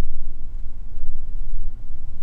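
A steady low hum in the recording's background, with no other distinct sound.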